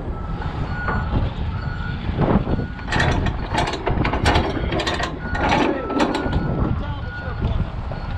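Clicks and rattles of a flatbed trailer's strap winch and its ratchet while a cargo strap is worked tight over the load, over a low steady rumble. Short beeps of a reversing alarm sound now and then, loudest about six seconds in.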